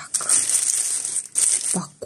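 Tissue paper and cardboard gift-box packaging rustling and crinkling as the box is handled, an uneven papery rustle for about a second and a half.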